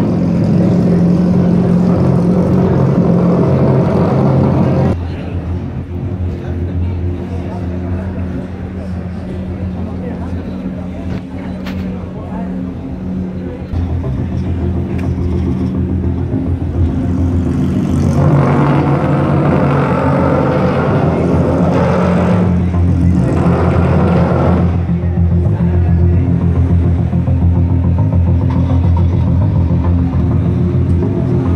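Loud, crowded exhibition-hall ambience: steady low-pitched background music with voices and chatter over it. The sound drops about five seconds in and swells again past the middle, with voices most prominent for several seconds about two-thirds of the way through.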